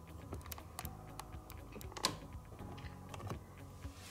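Irregular light clicks and taps, the loudest about two seconds in, over a low steady hum.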